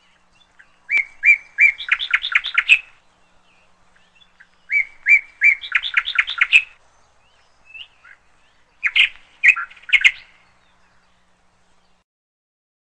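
A bird singing high, clear phrases: twice a few spaced notes run into a quick series of notes, and a shorter burst of notes comes near the end.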